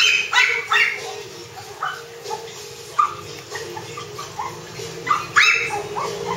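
Pomeranian barking and yipping in short sharp calls: three quick ones at the start, a few softer yips through the middle, and two strong barks near the end.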